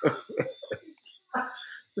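A man's stifled laughter: a run of short, cough-like huffs, then another burst a little over a second in.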